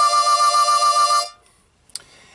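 Key of C blues harmonica playing one long held note that stops about a second and a quarter in.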